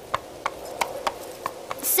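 A horse's hooves clip-clopping on a rocky path at a walk, about three hoofbeats a second.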